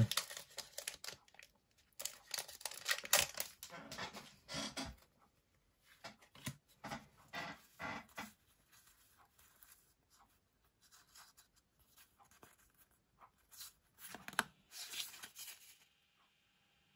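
A foil booster-pack wrapper of Pokémon trading cards being torn open and crinkled, then the stack of cards being handled. The rustling comes in short bursts, loudest in the first few seconds, with another burst near the end.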